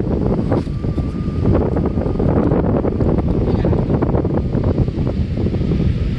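Wind buffeting the phone's microphone: a loud, steady rumble.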